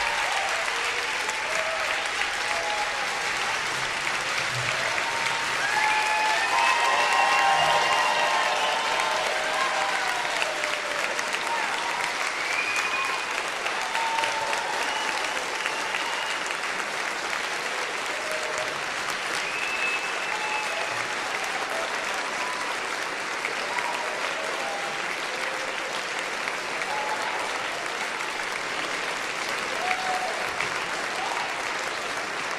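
A large concert-hall audience applauding steadily, with shouted cheers and whoops from the crowd that peak a few seconds in.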